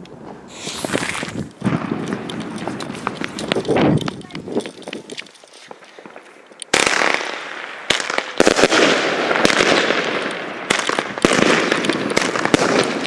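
Funke Gold Strobe 20 mm firework battery firing: after a few seconds of quieter noise, it starts about seven seconds in with a sudden burst of shots and dense crackling of strobe stars that goes on. It opens straight into its finale, having been lit at the wrong fuse.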